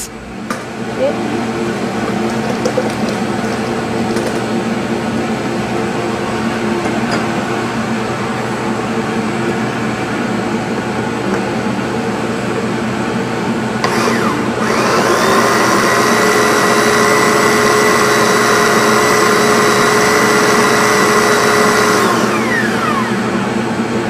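Countertop blender running, puréeing cooked strawberries and raspberries into a coulis. About fourteen seconds in it turns louder and higher-pitched, and near the end it winds down with a falling whine.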